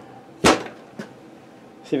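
A heavy vintage Remington Super 754 chainsaw set down on a workbench: one sharp clunk about half a second in, then a lighter knock about half a second later.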